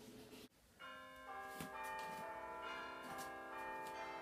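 Bells ringing in a peal: after a brief silent gap, several sustained bell tones enter one after another from about a second in and keep ringing on.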